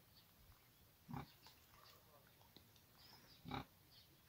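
Two short animal calls, about two and a half seconds apart, over near silence.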